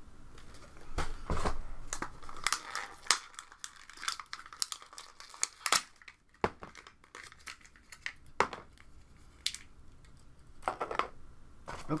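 Packaging being handled: irregular crinkling and rustling with scattered sharp clicks and knocks, busier in the first few seconds and sparser after.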